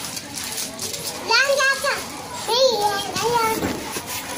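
A young child's high-pitched voice calling out twice in short, wavering phrases.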